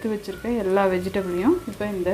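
Chopped vegetables being tipped and stirred into hot oil and onion-tomato masala in an aluminium pressure cooker, sizzling as they fry, under a person talking throughout.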